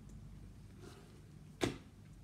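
A paper notebook being lowered and set down: a faint brush about a second in, then one short thump about one and a half seconds in, over quiet room tone.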